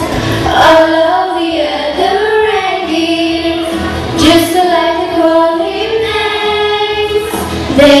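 A group of young girls singing a melody together into microphones, their voices amplified.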